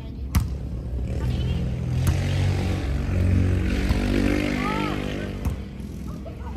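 A motor vehicle passing close by, its engine swelling, then falling in pitch and fading. Sharp smacks of a volleyball being hit come at the start, about two seconds in and near the end.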